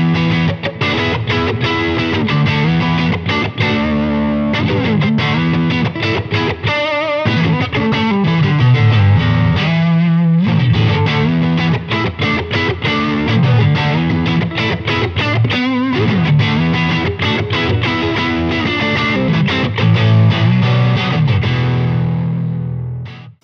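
Fender Stratocaster electric guitar played through a Badcat Black Cat amp with its reverb on: a continuous lead with quickly picked runs and held notes with vibrato about seven and ten seconds in.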